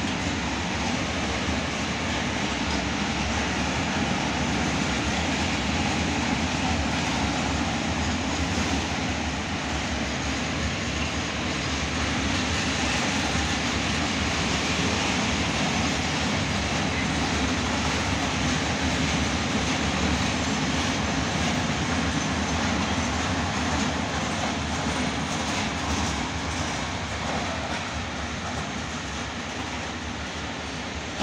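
A long freight train of open-top wagons rolling past, a steady rumble of steel wheels on the rails that eases a little near the end.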